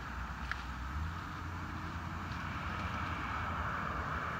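Steady low rumble and hiss of outdoor background noise, with one small click about half a second in.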